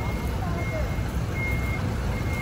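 Vehicle reversing alarm giving high-pitched beeps that start and stop, over a low, steady engine rumble.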